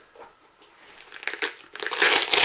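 Hook-and-loop (Velcro) closure on a fabric case flap starting to be peeled open: a crackly tearing sound building up over the last second, after a quiet start with a few small clicks.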